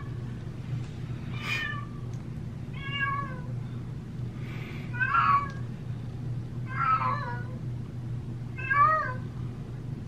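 A cat meowing repeatedly, about six short calls a second or two apart, over a steady low hum.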